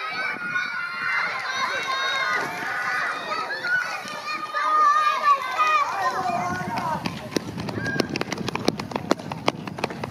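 Children shouting and cheering with high voices, giving way about seven seconds in to quick running footsteps as young sprinters pound past close by on a rubberised synthetic track.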